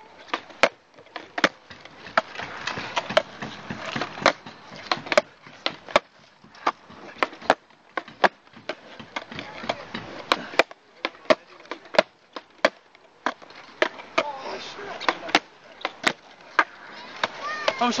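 Skateboard ollies done over and over on asphalt: a sharp clack from the tail popping and the deck landing, repeating about once a second, with a rolling hiss between them.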